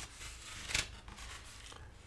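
Faint rustling of a paperback book's paper pages being handled and turned, with one sharp swish of a page just under a second in.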